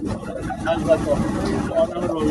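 Muffled, indistinct speech over a steady low rumble.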